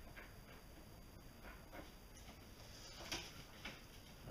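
Faint, scattered small clicks and rustles of hands handling a fishing lure and its eel skin; the clearest click comes about three seconds in.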